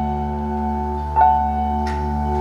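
Live instrumental music: a bell-like keyboard note is struck about a second in and rings over a sustained low drone, with a short high hiss near the end.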